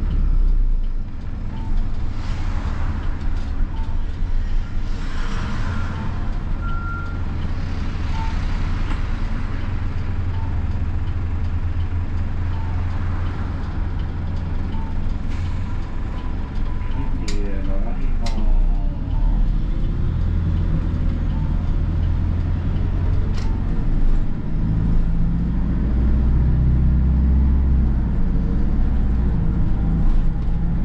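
Hino Poncho small bus's diesel engine running as the bus drives, heard from inside the cabin at the front: a steady low drone that grows louder in the last few seconds. A few sharp clicks come past the halfway point.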